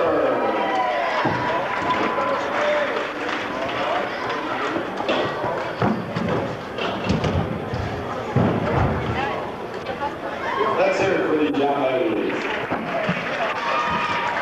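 Indistinct chatter of many voices echoing in a large gymnasium hall, with a couple of dull thumps in the middle.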